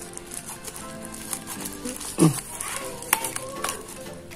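Background music with steady held tones over the rustle and snipping of scissors cutting into a taped plastic mailer. A short, low voice-like sound comes about two seconds in, and a sharp click a second later.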